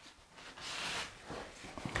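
Crinkled paper dragged across wet oil paint on a plywood panel, a soft rubbing hiss about half a second in that lasts about half a second, used to scrape texture into the painted ground.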